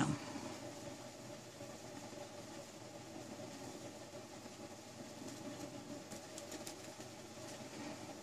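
Faint, steady low hum of room background noise, with a few faint light clicks about five to six seconds in.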